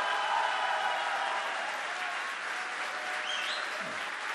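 An audience applauding, the applause slowly tapering off.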